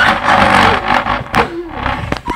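Loud rustling and scraping handling noise from the camera being jostled and pressed against something during a scuffle, with a sharp knock about a second and a half in.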